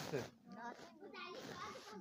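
A recited line ends with the voice sliding down in pitch and fading. Faint children's voices and chatter fill the pause after it.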